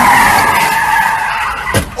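Dodge Charger's tyres squealing loudly as it spins donuts on asphalt, the squeal easing off towards the end. A brief sharp click comes near the end.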